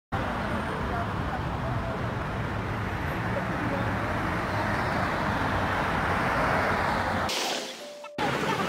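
Busy street traffic: a steady rumble of cars driving past, which fades and cuts off a little before the end.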